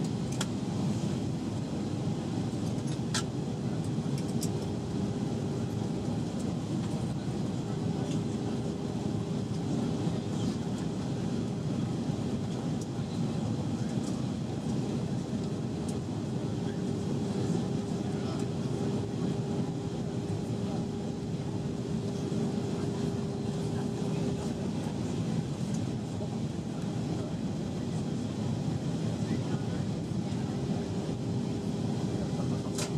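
Steady cabin drone of an Airbus A320-232 airliner in descent, heard from a window seat behind the wing: engine noise and rushing airflow. A thin steady hum runs through it, drops out and returns a few times, and there are a couple of faint clicks in the first few seconds.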